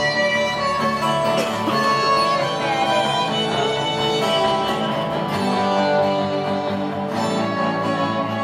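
Live acoustic instrumental music: violins bowing held notes and a slow melody over a plucked guitar accompaniment.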